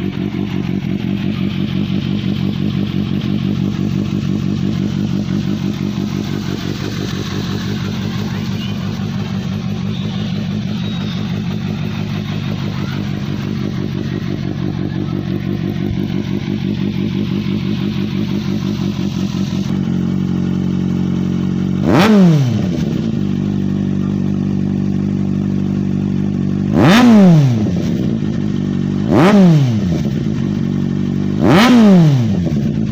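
Kawasaki Z800's inline four-cylinder engine idling steadily through an aftermarket Two Brothers Racing slip-on muffler. Later on come three quick throttle blips, each revving up sharply and falling straight back to idle.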